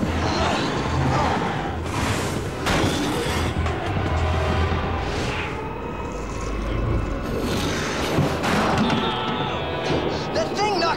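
Animated-series action underscore music mixed with sound effects: a continuous low rumble and several swelling whooshes and booms, the biggest about two, five and eight seconds in.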